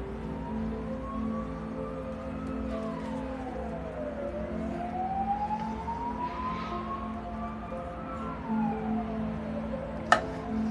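Background music of steady, sustained low notes. Over it a thinner tone twice glides slowly upward and then drops back down, like a siren's wail.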